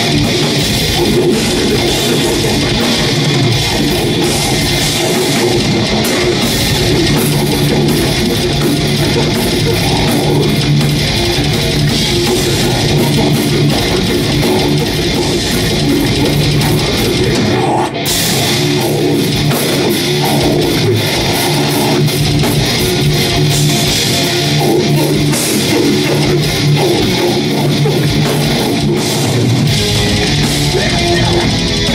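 A death metal band playing live at full volume: heavily distorted electric guitars and bass over fast, dense drumming and cymbals. The band drops out for a brief stop about 18 seconds in, then comes straight back in.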